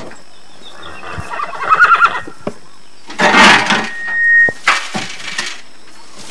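A horse whinnies about a second in. Two bursts of noisy clatter follow a couple of seconds apart, with a short high steady tone swelling between them.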